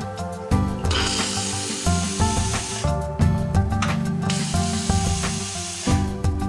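Steam wand of a Schaerer Ambiente super-automatic espresso machine hissing in two bursts of about two seconds each, starting about a second in and again past the four-second mark. Background music with a steady beat plays throughout.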